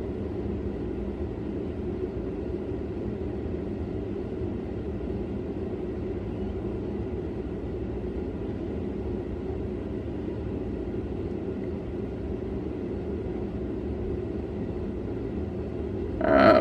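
Steady low hum and rush of a room air-conditioning unit, unchanging throughout.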